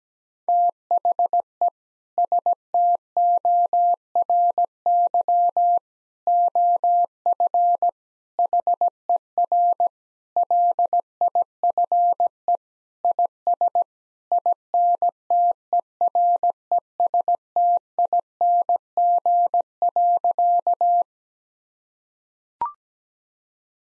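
A Morse code tone at 17 words per minute: a single steady beep keyed on and off in dots and dashes with gaps between letters and words. It spells out the sentence 'The story of her life is interesting' and stops about a second before the end.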